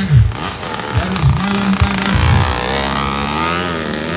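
Dirt bike engines revving in short throttle blips, then from about halfway running more steadily, the pitch wavering up and down.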